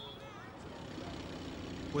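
Street ambience with a motor vehicle engine running, its hum growing louder through the second half.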